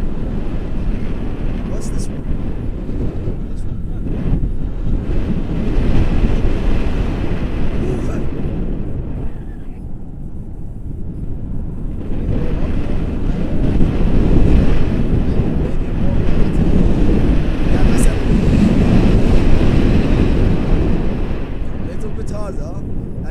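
Airflow buffeting the camera microphone in flight under a tandem paraglider: a loud, gusting low rumble that eases briefly about halfway through, then picks up again.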